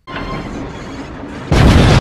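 Loud crash sound effect: a rough rumbling noise, then a much louder boom about a second and a half in that cuts off abruptly.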